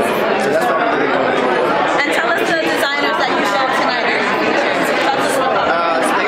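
Speech: a man talking close to the microphone over the chatter of many voices in a busy room.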